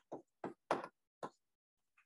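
Chalk on a blackboard while writing: several short, sharp taps and strokes, stopping a little past a second in.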